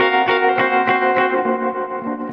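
Electric guitar picking a slow chord arpeggio, drenched in reverb and echo, about three notes a second with the chord ringing on underneath.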